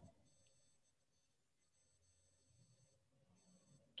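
Near silence on a video-call audio feed, with only a very faint high-pitched electronic whine.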